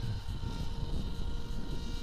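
Distant small brushless electric motor and propeller of a foam flying wing, a steady faint whine with a few held tones, over a low rumble.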